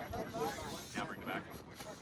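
Indistinct voices talking over the faint whir and gear noise of a motor-on-axle 2.2-scale RC rock crawler's motors as it crawls over rock.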